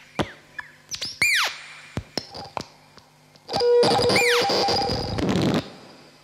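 Electronic noise from a patched Ciat-Lonbarde and modular synthesizer rig played by hand on its wooden touch-plates. It opens with a few quick downward-sweeping zaps, then past the halfway point a loud dense noise burst with held tones lasts about two seconds before dying away.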